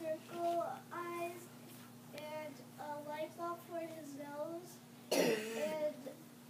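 A child's voice in short, held sing-song notes that step up and down, over a steady low hum. A loud cough breaks in about five seconds in.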